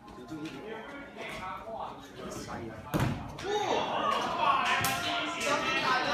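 Voices talking with music in the background, broken by a sharp slam-like thud about halfway through and a smaller knock shortly after.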